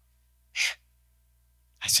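A man's single short, sharp intake of breath close to a handheld microphone during a pause in speaking, then his voice resumes near the end.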